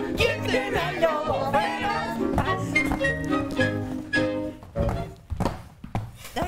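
Upbeat music with a steady beat, breaking off near the end.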